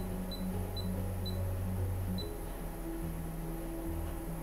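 Short high beeps from a tattoo power supply's touchscreen key clicks, about five in the first two seconds as the display colour setting is tapped through, over soft background music with sustained low notes.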